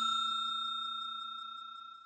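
Fading ring of a bell chime sound effect for the subscribe animation's notification bell: a few steady pure tones dying away slowly and stopping at the very end.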